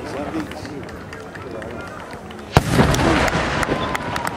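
A single aerial firework shell bursts with a loud bang about two and a half seconds in, its sound echoing on, followed by a run of small crackling pops. Spectators talk quietly before the burst.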